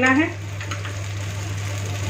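Ragi chilla batter frying in oil on a hot pan: a steady, even sizzle from the oil just added around the pancake's edge, over a constant low hum.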